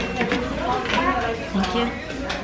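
Indistinct voices talking, with a steady high electronic tone that stops just after the start.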